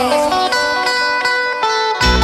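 Live cumbia music pared down to a lone melodic instrument line of held notes that step from pitch to pitch, with the bass and percussion dropped out.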